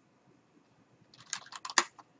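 Typing on a computer keyboard: a quick run of key clicks starting about a second in, one stroke louder than the rest near the end.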